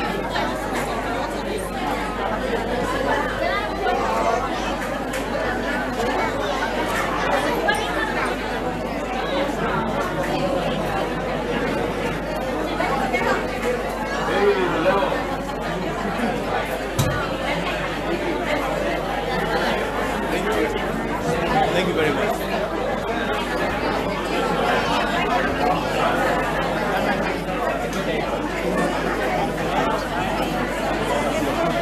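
Many people talking at once in a large hall: steady, overlapping chatter with no single voice clear.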